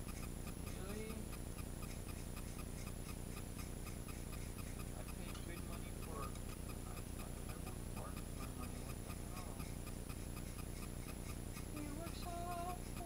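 Clockwork motor of a small wind-up toy ticking at a rapid, even rate.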